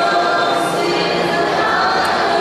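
Choir singing a communion hymn, several voices on held notes that change every half second or so.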